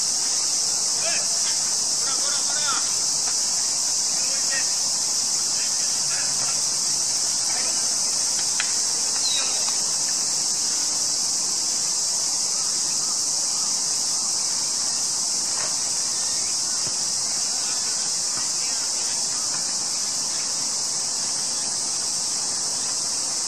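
A dense insect chorus: one steady, high-pitched drone that never breaks. Faint voices call out now and then in the first half.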